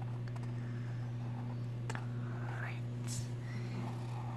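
A steady low hum, with soft whispering about two to three and a half seconds in.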